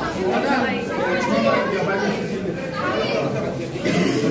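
Several people talking at once in a large echoing indoor hall: steady, overlapping crowd chatter with no single voice standing out.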